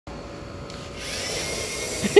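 Small wheeled robot's electric drive motors whining as it sets off across the board, the whine growing louder about a second in, over a steady background hum.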